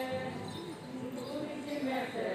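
A person's voice holding notes that drift in pitch, with low thuds behind it.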